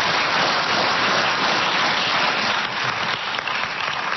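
Audience applauding, steady dense clapping that eases off slightly near the end.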